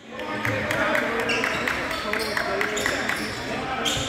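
Basketball game sounds: many overlapping voices of players and spectators, with a basketball bouncing on the court. The sound starts suddenly at full level.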